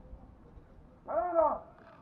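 A man's single drawn-out shouted drill command, about a second in: one syllable held for about half a second, its pitch rising and then falling.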